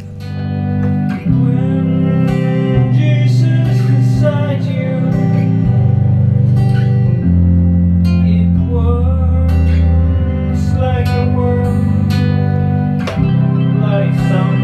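A duo's song: a strummed acoustic guitar over held low synthesizer notes played from a small keyboard controller, the bass note changing every second or two.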